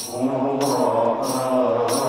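Men's voices chanting a sika, a Swahili Islamic devotional chant, in unison through microphones. A steady beat of jingling percussion strikes runs under the voices.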